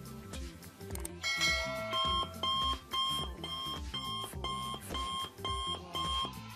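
Electronic alarm-clock beeping, about two short beeps a second, begins about two seconds in as a countdown timer runs down to zero, over steady background music.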